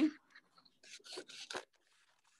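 White paper being cut into strips with a hand blade: about four short cutting strokes around a second in, faint over the video call.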